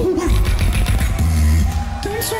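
Beatboxing: a vocal beat of deep bass pulses with pitched hummed lines and sharp mouth clicks on top.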